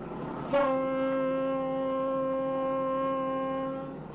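A ship's horn sounding one long blast of about three and a half seconds, starting abruptly about half a second in. It holds a single steady pitch with many overtones.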